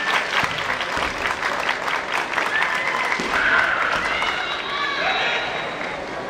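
Spectators clapping in a gymnasium during a kendo bout. Through the second half come drawn-out, gliding shouts, typical of fencers' kiai.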